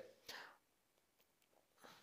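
Near silence: a pause in speech, with only faint breath sounds close to a handheld microphone near the start and near the end.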